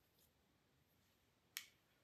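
Near silence, broken by one short, sharp click about one and a half seconds in.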